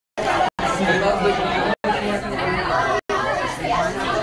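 Several voices chattering at once in a busy, echoing room, with one word, "no", picked out near the start. The sound cuts to dead silence for a split second three times, as each short clip ends and the next begins.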